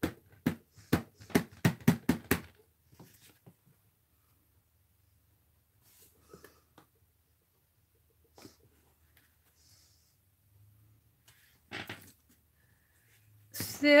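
A hand-carved number stamp dabbed quickly on an ink pad, about ten sharp taps at roughly four a second over the first two and a half seconds. After that come only a few faint handling sounds as the stamp is pressed onto the journal page.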